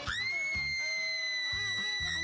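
A high-pitched scream that shoots up at once and is held at one pitch for about two seconds, over background music.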